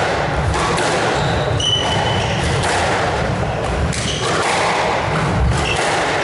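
Squash rally: a squash ball thudding against the court walls and being struck by rackets, with a few short, high squeaks of court shoes on the wooden floor, the clearest about two seconds in.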